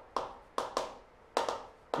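Chalk on a chalkboard: about five short, sharp strokes and taps as lines are drawn, some coming in quick pairs.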